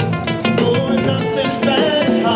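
Live Latin rock band playing: electric guitar over congas, drum kit and bass guitar, with a singer, all to a steady driving beat.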